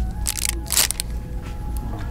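Plastic craft packet crinkling in a hand as it is handled on a pegboard hook: a few short crackles, the loudest a little under a second in, over a low steady hum.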